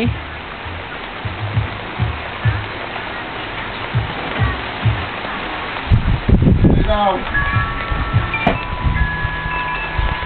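Rain falling steadily on a backyard, a dense even hiss of water. A voice breaks in briefly past the middle, and near the end a few held musical tones sound over the rain.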